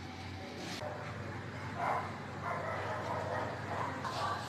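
Faint, soft voice sounds from a young child: a short one about two seconds in and a longer, wavering one from about two and a half to three and a half seconds.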